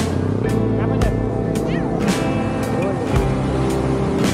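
Background rock music with a steady drum beat of about two hits a second, held chords underneath and a lead line that slides up and down in pitch.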